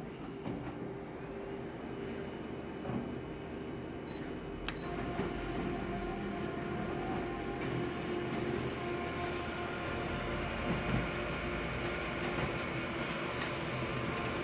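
Colour office multifunction copier making a full-colour copy. The scanner runs first; about five seconds in there is a click, and the print engine starts, running steadily and a little louder with a steady whine.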